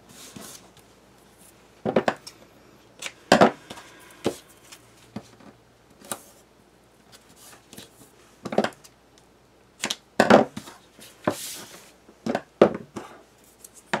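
Double-sided adhesive tape pulled off its roll and laid along the edges of a cardstock piece. Irregular short crackles and taps come through as the paper and tape roll are handled on the table.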